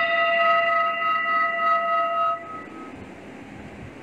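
A singing bowl ringing after being struck: several clear steady tones sound together and fade away about two and a half seconds in.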